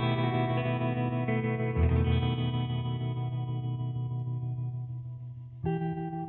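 Background music: guitar chords played through effects, each chord left to ring and slowly fade. A new chord comes in about two seconds in and another just before the end.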